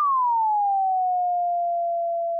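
ES2 software synthesizer playing a single pure tone whose pitch glides down and levels off into a steady held note about a second in. This is the pitch envelope finishing its decay and holding at the sustain level while the key stays down.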